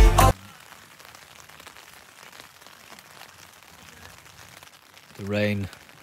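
Rain falling steadily on a tent's fabric, heard from inside the tent. Pop music cuts off just before it starts, and a person's voice sounds briefly near the end.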